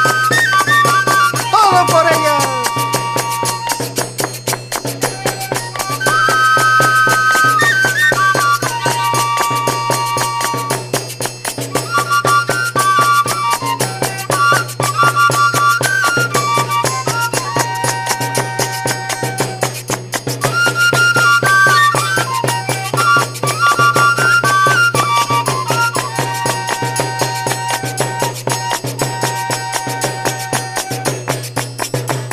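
Instrumental passage of northern Peruvian folk music played by a band. A lead instrument plays a melody of held notes in repeating phrases over a fast, steady beat.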